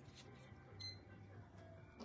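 Near silence: room tone with a low steady hum and a faint light handling sound a little under a second in, as a packaged clear-stamp set in its plastic sleeve is picked up.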